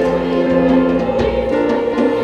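Youth choir singing, accompanied by piano and a djembe-style hand drum whose strikes cut through the sustained voices a couple of times a second.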